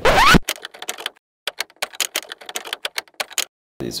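A quick rising whoosh, then a run of sharp, irregular typewriter-style key clacks with short silent gaps, stopping shortly before the end: an edited transition sound effect.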